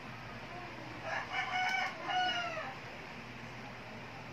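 A rooster crowing once: a single call beginning about a second in and lasting about a second and a half, its last part falling slightly in pitch.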